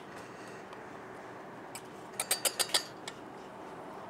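Wire whisk stirring dry flour blend in a metal bowl, with a quick run of about half a dozen light clinks of the tines against the bowl about two seconds in, over a faint steady hiss.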